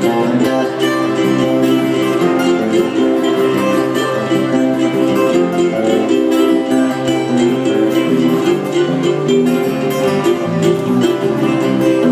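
Live instrumental music from a string trio: two guitars plucked and strummed over an upright bass line, with no singing.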